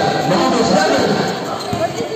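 Basketball dribbled on a concrete court, with a couple of sharp bounces clearest near the end. Voices from the crowd and players carry on throughout in a large covered hall.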